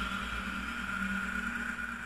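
Closing stretch of a psytrance track: a steady electronic drone of held synth tones over a low rumble, with no beat.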